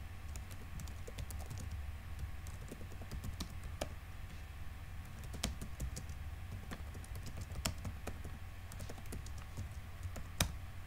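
Computer keyboard typing: irregular key clicks, some louder than others, over a steady low hum.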